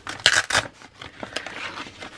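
Paper sticker sheets being slid into a frosted plastic sleeve: rustling and crinkling of paper against plastic. There are a few sharp rustles in the first half second, then softer handling.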